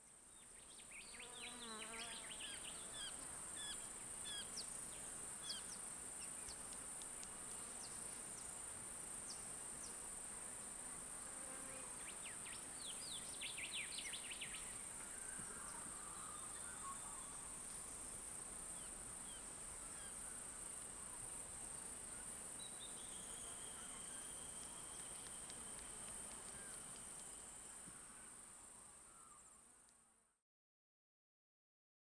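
Field ambience of insects droning steadily on a high pitch, with scattered short chirps, one cluster near the start and another about halfway through. A long held high note enters in the last quarter, and the sound fades out at the end.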